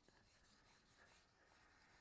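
Near silence, with faint rubbing of a knife blade stroked across a wet Japanese natural whetstone that is raising a little slurry.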